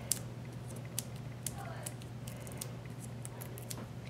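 Faint small clicks and paper rustles of hands handling a cardstock strip and pressing small foam adhesive dots onto it, over a steady low hum.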